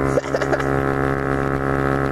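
Honda Ruckus scooter engine, fitted with a Yoshimura exhaust, running at a steady, even pitch while cruising on the road.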